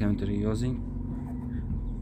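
Daewoo Nexia 1.6's four-cylinder engine idling steadily, heard from inside the cabin, with its throttle body freshly cleaned and the throttle sensor refitted. A man's voice is heard briefly at the start.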